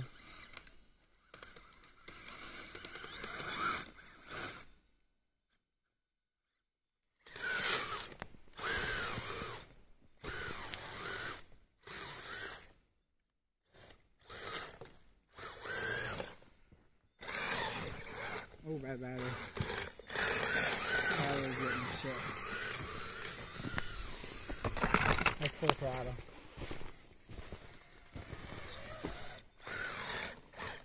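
Electric motor and drivetrain of a radio-controlled crawler on snow tracks, whining in short bursts with pauses between them as it drives through snow.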